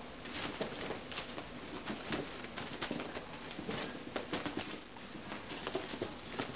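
Cats' paws scampering, pouncing and landing on carpet while chasing a feather wand toy: a quick, irregular patter of soft thumps and scuffs.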